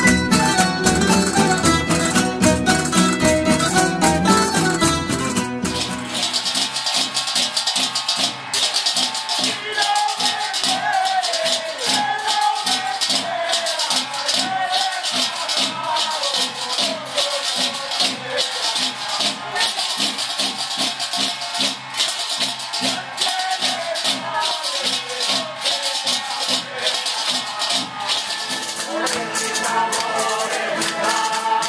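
Folk ronda of strummed and plucked guitars with a tambourine; about six seconds in it cuts to men singing loudly over metal frying pans and pots scraped and struck with metal utensils in a steady, rattling rhythm.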